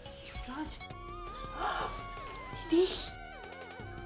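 Background music score with sliding, gliding tones and two short, bright effect sounds, the second and louder one about three seconds in.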